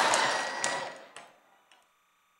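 Audience laughter in a large hall, with a few sharp claps or clicks in it, dying away about a second in.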